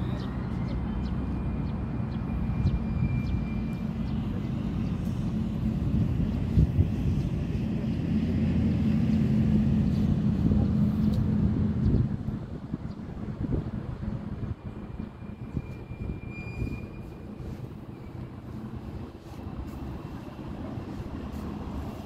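A steady low engine rumble, loudest for the first twelve seconds, then dropping away and continuing more quietly, with a few faint high whistles and clicks over it.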